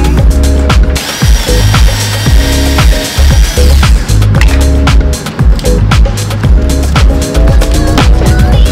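Background music with a steady beat and a bass line. A high, steady tone sits on top for a few seconds in the middle.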